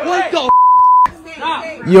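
A steady, high-pitched censor bleep, about half a second long, starting about half a second in and cutting off abruptly, blanking out a word between stretches of speech.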